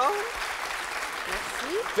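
Studio audience applauding, with a voice briefly heard over the clapping at the start and near the end.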